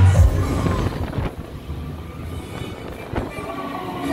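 Dark-ride show audio: a deep boom at the start, then low rumbling under music, with a sharp crack about three seconds in.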